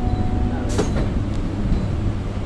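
Low running rumble of an electric multiple-unit local train moving slowly, heard from its open doorway. A steady electric hum cuts off just over half a second in, followed by a brief sharp hiss-like noise.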